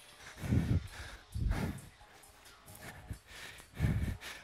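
A man's heavy exhalations picked up by his headset microphone while doing step aerobics: three short breath puffs, near the start, about a second and a half in, and near the end.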